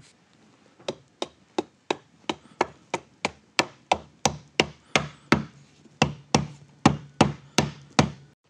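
White rubber mallet tapping the top piece of a wooden lamp base down onto glued dowels, seating the joint: a steady run of about twenty short knocks, roughly three a second, starting about a second in.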